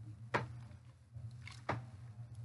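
Hands working hair extensions in a sink of soapy water: two short sharp splashes, about a second and a half apart, over a low steady hum.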